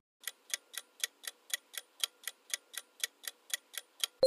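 Quiz countdown-timer sound effect: a clock ticking quickly and evenly, about four ticks a second, counting down the time left to answer.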